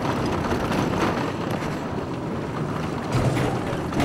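Small car driving over a rough, potholed gravel road: a steady rumble of engine and tyres on gravel, with a louder low jolt about three seconds in.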